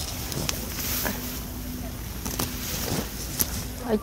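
A steady, low engine hum from a distant motor. Over it come a few short, sharp snaps and rustles as hands work in the trellised vines, picking.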